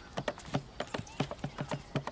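Hand drumming on an empty plastic barrel: quick strikes, about five a second, in an uneven running rhythm.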